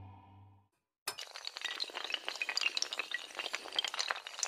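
A held musical tone fades away, and about a second in a glass-shattering sound effect starts suddenly: a dense rush of small tinkling, clinking crashes that keeps going as tiles of an animated logo tumble into place.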